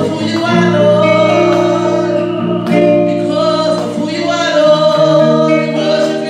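A woman singing a gospel worship song into a handheld microphone, over an accompaniment of long held chords.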